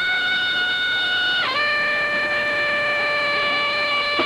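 Marching band wind instruments sustaining a single long high note, which slides down about a second and a half in and settles on a lower held note.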